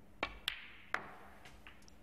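Sharp clicks of snooker balls being struck during a shot, three hard knocks within the first second, each with a brief ringing tail.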